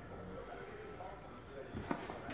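Faint background voices over low room sound, with one short sharp knock near the end as a cat pushes off and leaps from a bed.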